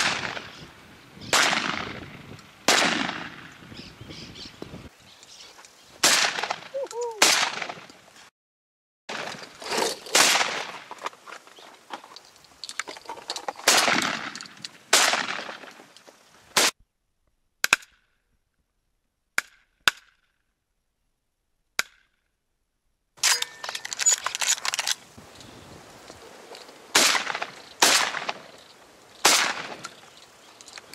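Shotguns firing repeatedly at doves: about a dozen loud shots at irregular intervals, sometimes two close together, each trailing off in a short echo. The shooting stops for several near-silent seconds in the middle, with only a few faint clicks, then picks up again.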